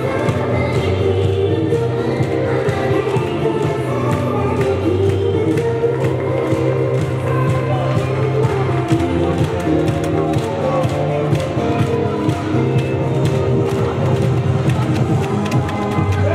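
K-pop dance song with sung vocals and a steady beat, played loud through a basketball arena's sound system.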